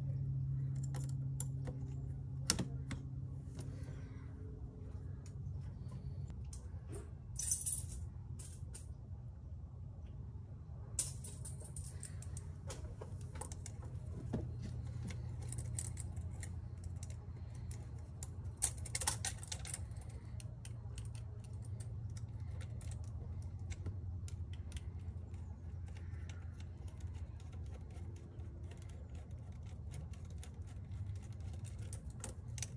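Scattered light clicks, taps and rattles of plastic intake parts, clamps and a screwdriver being handled as a stock air intake is refitted, with a few short rustles, over a steady low hum.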